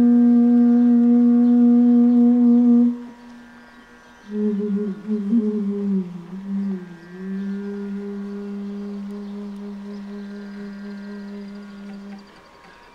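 Long bass bansuri (bamboo transverse flute) playing a slow, unaccompanied passage: a low note held for about three seconds, a brief break, then a note bent downward with ornaments that settles into a long sustained lower note, fading gently near the end.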